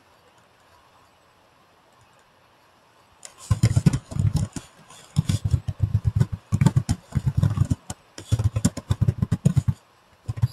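Computer keyboard being typed on in quick, irregular bursts, each keystroke picked up as a heavy thump with a click, starting about three seconds in after a quiet start.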